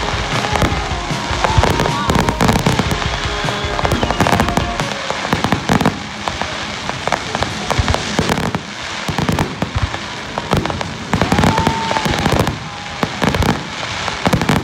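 Fireworks display: a rapid series of bangs and crackling from bursting shells, with people's voices underneath.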